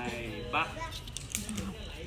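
Faint voices with a brief high child's call about half a second in, and a few light taps and clicks.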